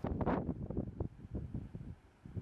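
Wind buffeting the microphone: an uneven low rumble, strongest in the first second, easing off toward the end.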